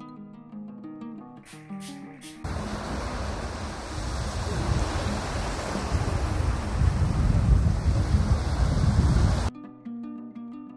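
Plucked-string background music, then about two and a half seconds in, the rushing sound of ocean surf takes over, swelling louder and cutting off suddenly shortly before the end, when the plucked music returns.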